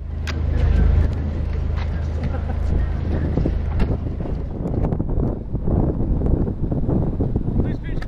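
Wind rumbling and buffeting on the microphone of a hand-held camera carried along with cyclists. It is loudest about a second in and stays irregular throughout.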